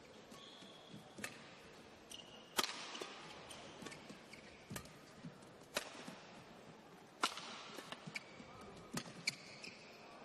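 Badminton rally: sharp racket strikes on a shuttlecock every second or two, with short squeaks of shoes on the court mat between them.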